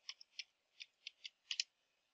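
Faint computer keyboard keystrokes: about eight short, irregular clicks, with a quick double click near the end.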